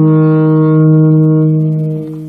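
Electric guitar played through a Line 6 Amplifi 75 modelling amp, holding one low note that swells in and rings steadily, starting to fade near the end.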